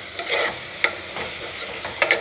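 Chopped cluster beans (gawar phali) sizzling in a nonstick pot as a metal spoon stirs them, with a few sharp scrapes and clicks of the spoon on the pan. The beans are being fried dry to cook off the last of their water.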